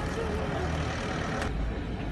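Crowd murmur with a steady low vehicle rumble underneath. About one and a half seconds in the sound changes abruptly: the hiss drops away and the deeper rumble comes up.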